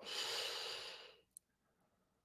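A person's breath or sigh close to a microphone, a single breathy exhalation lasting about a second.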